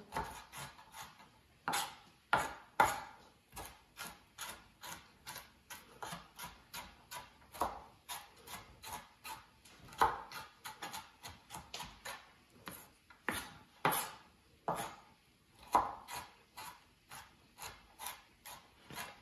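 Kitchen knife chopping diced carrots on a plastic cutting board: a continuous run of sharp knocks, about two or three a second, some strokes louder than others.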